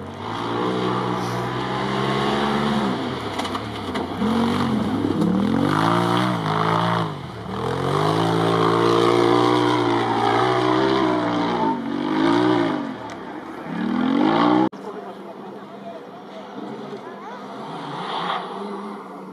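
A cross-country rally car's engine is revved hard, its pitch climbing and dropping back again and again through gear changes and lifts. About 15 s in, the sound cuts off suddenly and a quieter, steadier engine noise is left.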